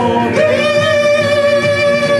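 Singing over backing music, with a voice holding one long, high note that begins about half a second in.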